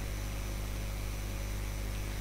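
Steady low electrical hum under an even hiss: the background noise of the recording microphone between words.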